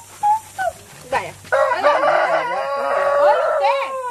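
A rooster crowing once, a long call of about two and a half seconds starting about a second and a half in.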